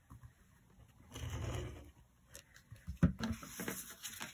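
Hands handling card stock on a craft mat: a soft rub of paper sliding about a second in, then a few light clicks and taps near the end.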